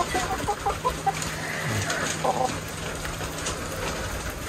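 Domestic hens clucking softly in a few short notes, with steady rain in the background.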